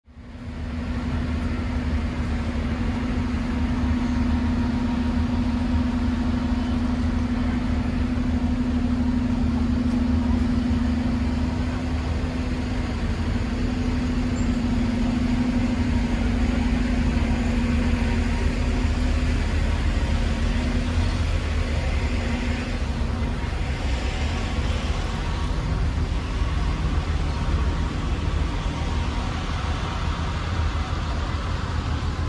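City street traffic: a steady low rumble of road vehicles, with an engine's steady hum lasting until about two-thirds of the way through. The sound fades in at the start.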